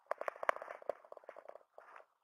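Handling noise: a quick, irregular run of small clicks and rustles as the handheld camera is moved about.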